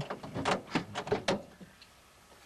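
Car seat belt and buckle being handled: a quick series of clicks and knocks over about a second and a half, then quiet cabin noise.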